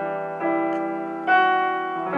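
Piano playing an instrumental passage: sustained chords ringing, a new chord struck about half a second in and a louder one just past a second.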